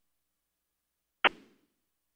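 Dead silence on a telephone conference line, broken a little over a second in by one brief click-like burst that dies away within a quarter second.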